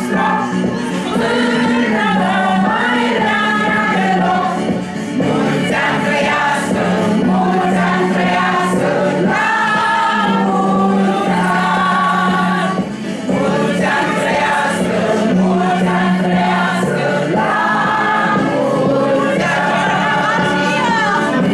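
A group of people singing together in chorus, held notes running on without a break.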